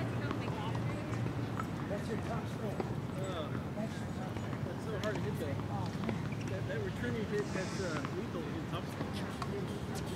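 Indistinct chatter of voices at a distance, with a few faint knocks scattered through.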